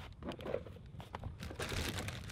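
Gear being rummaged through in a vehicle's storage drawer: soft rustling of plastic packets and scattered light clicks and knocks as boxes and tools are moved about.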